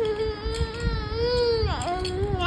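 Baby's long, drawn-out vocal cry, one held note that slides sharply down in pitch near the end.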